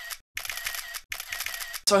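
Camera shutter sound effects: three quick runs of rapid clicking, each broken off by a moment of dead silence.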